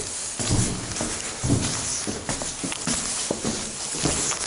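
Footsteps on a staircase, irregular steps about once or twice a second.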